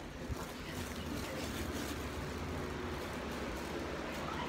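Steady rubbing and rustling noise right against a phone's microphone as the phone is carried, with a low rumble underneath.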